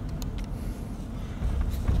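Steady low rumble of a moving car heard from inside the cabin, with a few faint clicks near the start.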